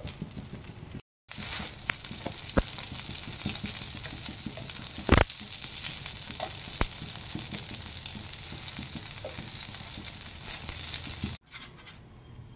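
Aloo tikkis shallow-frying on an oiled nonstick tawa with a steady sizzle, while a slotted spatula turns them and clicks against the pan a few times. The loudest knock comes about five seconds in.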